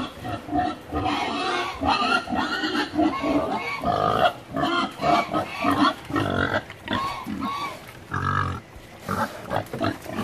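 Several pigs grunting and squealing, one call after another, as they crowd around to be fed.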